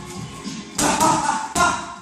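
Boxing gloves striking focus mitts, about three sharp smacks in quick succession in the second half.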